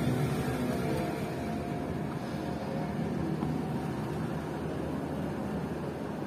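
A steady low rumble of background noise, with the tail of a woman's laugh at the start.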